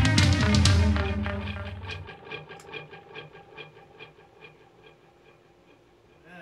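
Live instrumental progressive metal band, with electric guitars, bass and drum kit, playing loud for about the first second, then ending the song. After about two seconds the low end drops out, leaving a quick repeating note, about five a second, that fades away.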